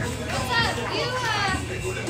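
Several voices shouting and whooping over one another, as from a small theatre crowd cheering, with a steady low hum underneath.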